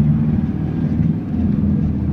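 Engine and road noise of a moving road vehicle heard from inside the cabin: a steady low drone.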